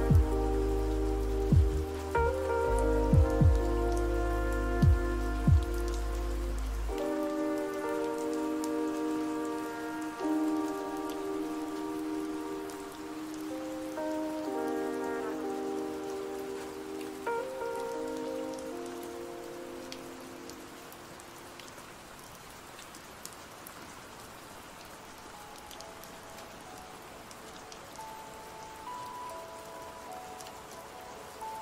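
Steady rain under a lofi hip-hop track. The bass and beat stop about seven seconds in and the chords fade out by about twenty seconds, leaving only the rain. A new track's chords come in near the end.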